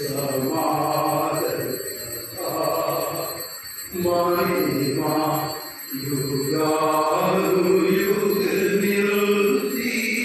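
Slow liturgical chant at Mass, a low voice singing long held notes in phrases a second or two long, with short breaks between them.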